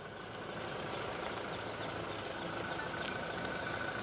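Steady background hum like a motor running, with a faint steady whistle over it and a quick series of faint high chirps in the middle.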